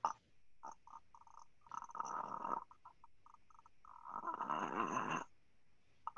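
A young man's strained, breathy vocal sounds in several short pushes, the longest and loudest about four seconds in: the effortful sounds of a stuttering block before his first words come out.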